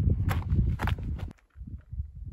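Hiker's footsteps on a bare granite and gravel trail: a few steps over a low rumble, cutting off abruptly about a second and a half in, followed by a faint low rumble.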